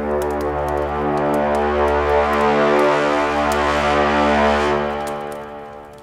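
A long held musical drone or chord of several steady low pitches. It sounds without change for several seconds, then fades away near the end.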